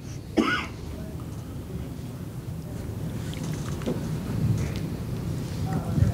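Quiet press-room background with a low, steady rumble, broken by a brief vocal sound about half a second in and a few faint rustles.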